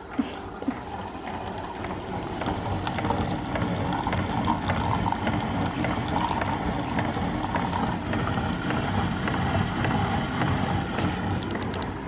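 Single-serve K-cup coffee maker brewing: a steady pump hum and hiss with coffee streaming into a mug, growing louder over the first few seconds and then holding. Two short clicks sound near the start.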